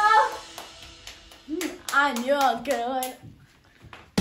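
A person's voice calling out in a long, wavering cry lasting about a second and a half, with a few sharp hand claps, then it goes quiet near the end.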